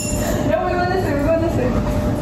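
A woman's voice saying a few words over a steady low rumble of room noise.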